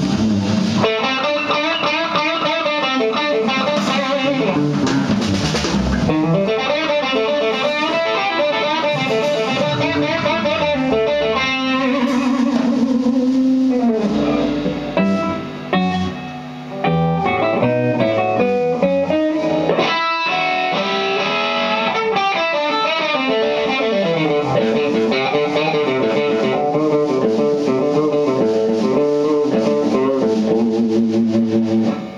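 Live rock band in an instrumental section: a Stratocaster-style electric guitar plays a lead of quick runs of notes over bass, keyboards and drums. The level drops briefly about halfway through, then the playing carries on.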